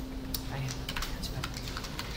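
Computer keyboard typing: a quick, uneven run of key presses starting about a third of a second in, as a line of code is deleted in the editor.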